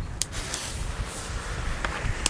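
Steady low outdoor rumble with a faint hiss and a few faint sharp ticks, in the lull between firecracker bangs.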